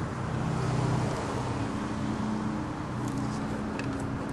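A car engine running with a low, steady hum, with a couple of faint clicks near the end.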